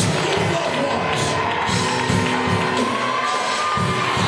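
Live church praise band playing: drum kit keeping a steady beat under keyboard and guitar, with a long held note that rises slightly near the end. Worshippers' voices shout and cheer over the music.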